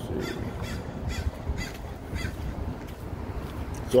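A bird calling in a series of about five short calls, roughly two a second, over a low steady street rumble.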